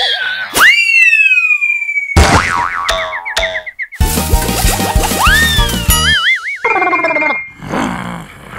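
Cartoon sound effects over background music: a long falling whistle, then a wobbling boing, and later rising slide-whistle glides and a short wavering warble.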